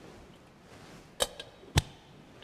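Two sharp knocks about half a second apart, the second heavier and deeper, with a fainter tap between them.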